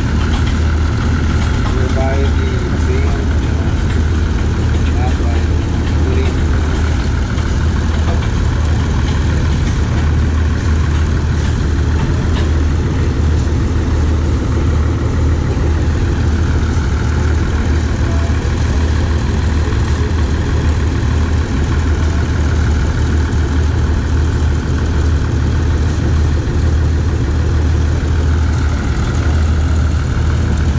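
A large engine running steadily at idle with a deep, even drone that does not change. Faint voices sound in the background.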